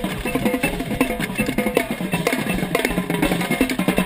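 Marching band playing its show opener, with a set of tenor drums (quads) struck right at the microphone in rapid strokes amid the rest of the drumline, over steady held notes from the band.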